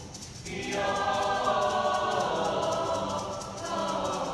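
Mixed choir of male and female voices singing; after a brief lull the voices swell in about half a second in and sustain a full chord.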